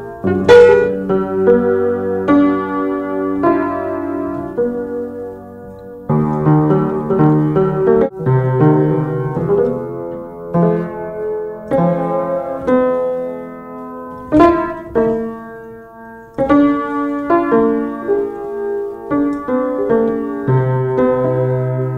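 Piano music: notes and chords struck one after another, with a few sharper, louder strikes.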